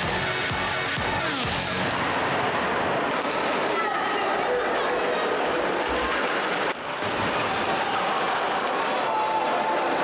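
Steady ice hockey arena noise during live play, with faint music and voices underneath. The noise dips briefly about seven seconds in.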